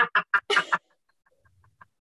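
A hand-held wooden game call is blown in a quick series of short, squawking blasts, about six a second, that ends in one longer blast just under a second in.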